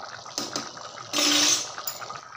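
Biryani rice and water boiling in an aluminium pot, a steady bubbling as the water boils down. About a second in comes a short, louder hiss lasting over half a second.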